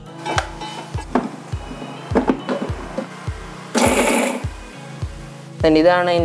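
Background music with a steady beat. About four seconds in, a Preethi Taurus mixer grinder is pulsed once in a short burst, shredding cooked chicken in its jar.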